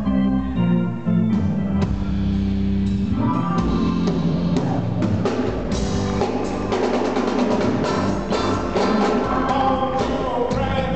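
Live blues band playing: held organ chords open the passage, then drums and cymbals come in strongly about four seconds in, under organ and electric guitar.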